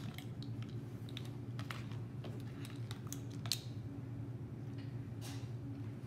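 Light clicks and taps of a measuring spoon working in a small glass spice jar and against a mixing bowl while cinnamon is measured out, one click sharper about three and a half seconds in, over a steady low hum.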